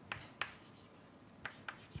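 Chalk writing on a blackboard, faint: four short taps and strokes spaced unevenly across two seconds.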